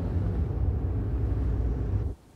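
Car driving, heard from inside the cabin: a steady low engine and road rumble.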